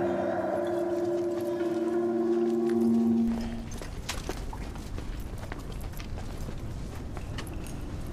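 Ambient film-score drone of steady held tones, which cuts off about three seconds in. After it comes a low rumbling cave ambience with scattered faint clicks.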